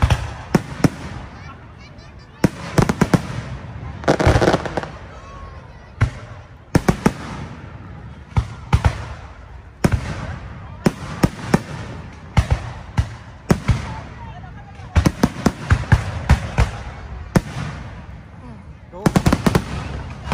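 Aerial fireworks shells bursting overhead: sharp bangs and crackles arriving in quick volleys of several per second, with gaps of a second or two between volleys.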